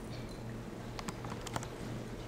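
Keys pressed on a laptop keyboard: a quick cluster of light clicks about a second in, over a steady low hum.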